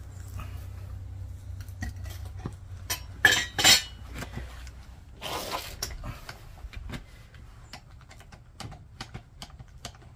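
Steel crucible tongs and a clay-graphite crucible clanking and clinking as the crucible is set down on the brick stand after a copper pour: two loud clanks about three and a half seconds in, a short scrape a couple of seconds later, then scattered light metallic clicks.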